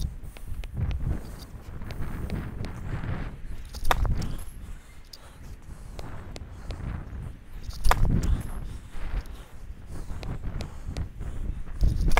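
Tennis serves: a racquet strikes the ball sharply twice, about four seconds apart, with smaller ball-bounce taps between them. Wind rumbles on the microphone throughout.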